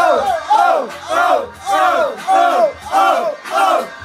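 Several voices whooping and hollering together in repeated rising-and-falling calls, about two a second, over a low bass beat.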